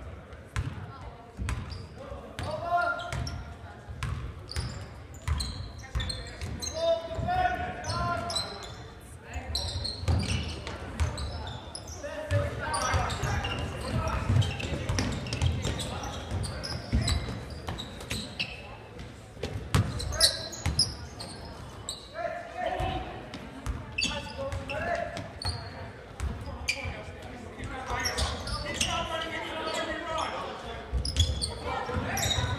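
Basketball being dribbled on a hardwood gym floor, a run of sharp bounces ringing in a large hall, under indistinct voices of spectators and players.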